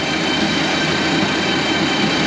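A feeder wagon's cross conveyor running on a newly fitted belt, driven by a John Deere tractor: a steady mechanical running of the belt and rollers over the engine.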